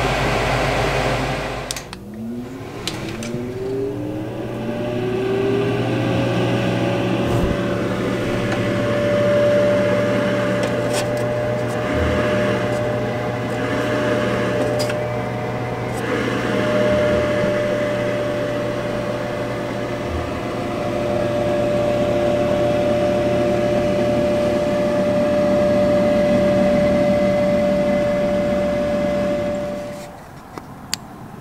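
A 4-inch inline duct fan is switched on and spins up, its whine rising in pitch over about four seconds. It then runs at full speed with a steady whine over a low hum.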